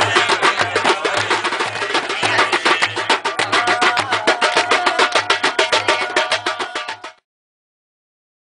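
Percussion music: fast hand-drum strikes over a deep beat about twice a second, with a held higher note joining about halfway. It cuts off abruptly about seven seconds in.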